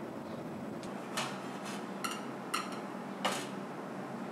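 Faema Faemina espresso machine humming steadily during an automatic pour-over, with four short sharp clinks from about a second in, the last one the loudest.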